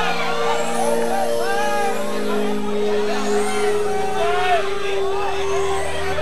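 A large crowd of young men shouting and calling, many voices overlapping, over a steady hum that slowly drops in pitch.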